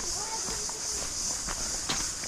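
Footsteps on a dry dirt trail, a few separate steps, over a steady high-pitched hiss, with faint voices early on.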